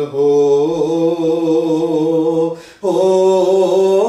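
A man reciting a naat (a devotional poem in praise of the Prophet Muhammad) solo and unaccompanied, in long held, slowly moving notes. There is a short break for a breath about three seconds in.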